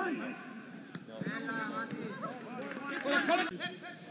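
Several men's voices calling and shouting, loudest a little after three seconds in.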